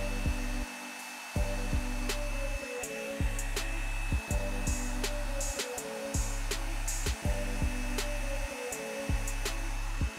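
Revlon One Step hot-air dryer brush blowing steadily as it is drawn up through a section of hair, under background music with a steady beat.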